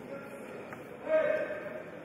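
A single loud, high-pitched shout lasting under a second, about a second in, over the steady background noise of a sports hall; a fainter call and a brief click come just before it.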